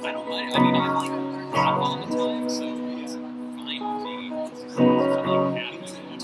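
Electric guitar played solo: chords struck and left to ring, with single notes between them. The loudest strikes come about half a second in, a second later, and again near the end.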